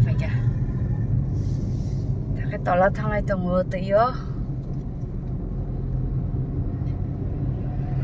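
Steady low rumble of a car driving, heard from inside the cabin, with a person's voice briefly in the middle.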